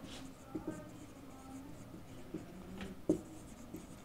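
Marker writing on a whiteboard: faint scratches and squeaks of the felt tip on the board, with a small click about three seconds in.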